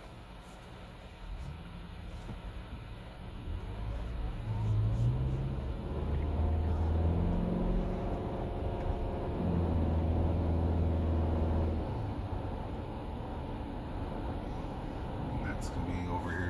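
Inside the cabin of a 2021 Toyota Sienna hybrid minivan pulling away from a stop: a faint rising whine, then engine hum and road noise come in about four seconds in and grow louder as it gets up to speed.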